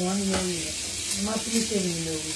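A person's voice in two short stretches, one at the start and one from a little past the middle, over a steady hiss.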